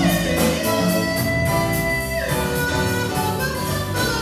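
Live jazz septet playing an instrumental passage: a lead line holds a long high note that steps down about two seconds in, over piano, bass and drums, with a cymbal keeping time.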